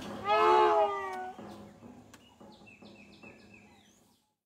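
An elephant's high, pitched call lasting about a second, wavering slightly, an excited vocalization the keepers describe as joy, not aggression. In the second half a bird gives a run of short falling chirps.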